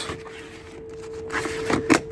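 Pleated Remis cab blind being slid across a motorhome's front door window, its fabric pleats and plastic rail scraping, with a click near the end as it clips into place. A steady hum runs underneath.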